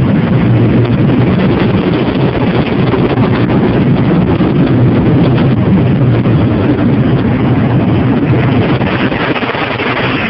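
Automatic car wash machinery running over the car, heard from inside the cabin: a loud, steady rushing roar.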